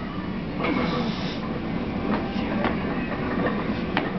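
A lifter setting up under a loaded barbell in a squat rack over a steady low rumble: a short hissing breath about a second in, then a few light clicks and knocks of the bar and plates.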